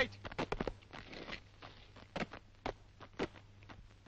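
Army boots striking the hard parade square in irregular steps and knocks, over a steady low hum from the old film soundtrack.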